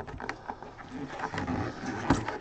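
Light taps and rubbing as a cardboard collectible box is handled and turned over in gloved hands, a few small clicks among them, with a faint voice underneath.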